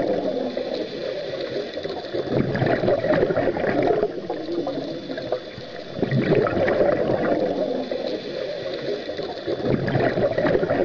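Bubbling, gurgling water sounds that swell and fade about every four seconds, like an underwater ambience laid over the opening titles.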